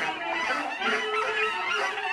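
Tenor saxophone played with harsh, shifting tones, a note held for about a second in the middle, over a bowed cello.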